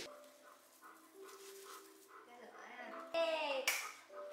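A faint quiet stretch, then near the end a short high-pitched cry that falls in pitch, followed at once by a single sharp hand slap: a high-five.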